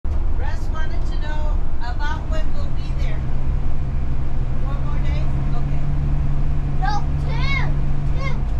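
Steady low road and engine rumble inside a motorhome cab cruising on a highway, with a steady hum joining about two and a half seconds in. High-pitched voices sound over it, with a rising-and-falling call near the end.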